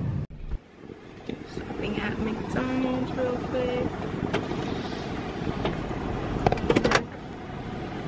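Car interior noise: a steady low rumble from the car running, heard from inside the cabin, with faint voices in the middle and a few sharp clicks near the end.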